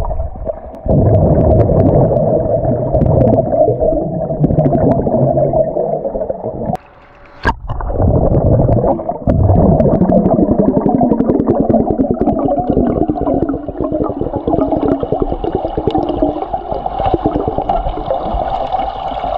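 Muffled underwater sound from a camera held submerged in a swimming pool: a loud, dense rumble of water and bubbles moving against the camera. It drops out briefly about seven seconds in, followed by a sharp click.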